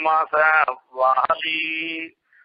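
A man's voice intoning a verse in chant, the last syllable held on one steady note for most of a second before it breaks off.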